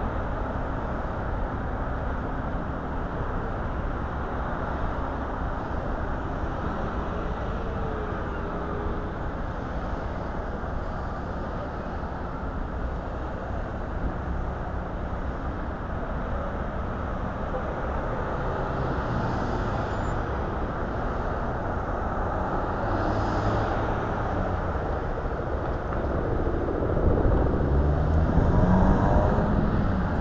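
Road traffic: cars passing through an intersection with a steady rumble of engines and tyres, and one vehicle's engine growing louder over the last few seconds.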